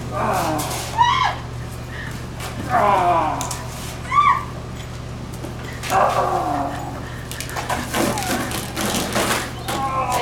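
Children's high squeals and excited shouts during a backyard water-gun fight: several short cries that rise and fall in pitch, with bursts of shrieking and laughter near the end.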